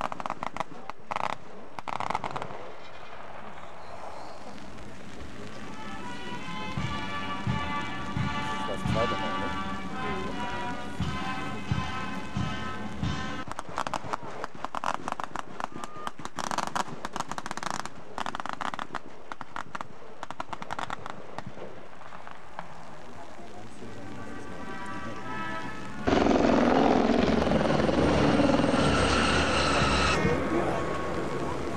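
Rifles of a line of troops crackling in quick ripples, broken by a short phrase from a military band with brass and bass-drum beats: the running fire of a feu de joie. Near the end a much louder, steady rushing noise starts suddenly.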